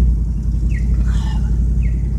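A vehicle's engine idling, a steady low rumble heard from inside the cab. A short, high chirp falling in pitch repeats about once a second over it.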